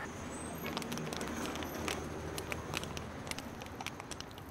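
Quiet outdoor street background with a steady low hum and scattered light clicks and scuffs of a handheld camera being moved.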